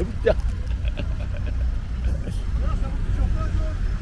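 Steady low rumble of a car driving along, engine and road noise, with a faint voice briefly near the start.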